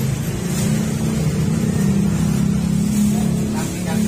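Motorcycle engine idling with a steady low hum, a little louder in the middle, with a few light clicks near the end.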